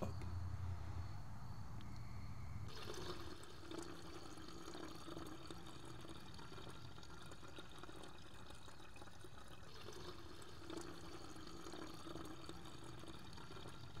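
Whey being poured from a plastic jug through cheesecloth into a plastic cup: a faint, steady trickle of liquid, beginning about three seconds in.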